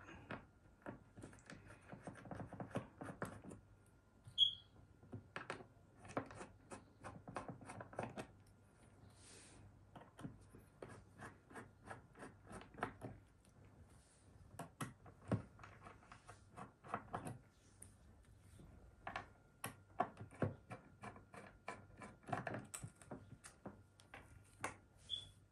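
Small screwdriver working out the screws of a 3.5-inch hard drive's metal case: a long, irregular run of faint light clicks, scrapes and taps of metal on metal, with the drive and screws knocked against a wooden table.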